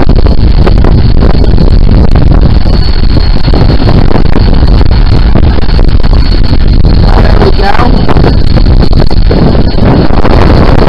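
Wind buffeting the microphone over breaking surf: a loud, steady, low rumble that overloads the recording.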